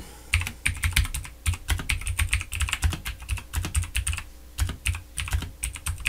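Typing on a computer keyboard: a quick run of keystrokes, several a second, with a short pause about four seconds in.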